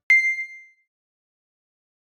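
A single bright ding sound effect: one chime struck once, ringing briefly and fading out within about a second.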